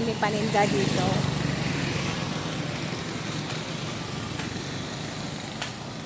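A motor vehicle's engine running by on the road, its sound slowly fading away, over outdoor street noise.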